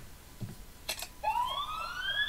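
A siren starts about a second in and wails upward in pitch, rising steadily and still climbing at the end.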